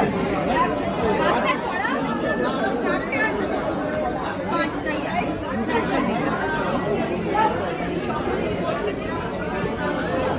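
People talking, several voices overlapping in continuous chatter.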